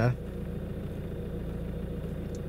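Volvo C30's engine idling steadily, heard from inside the cabin as a low, even hum.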